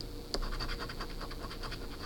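A coin scratching the coating off a paper scratch-off lottery ticket in quick back-and-forth strokes, starting with a sharp click about a third of a second in and stopping near the end.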